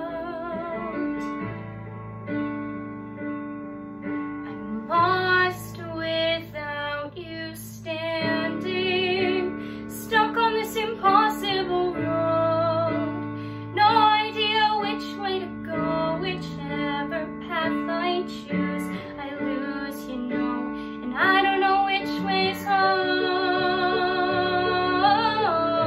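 A young woman singing a musical-theatre song solo with vibrato over an instrumental accompaniment.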